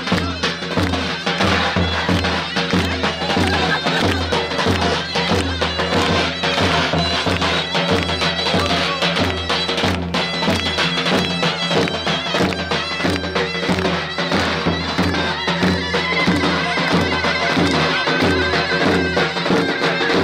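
Loud traditional Kurdish folk dance music for a line dance: a shrill, reedy wind instrument plays a continuous melody over a steady drum beat.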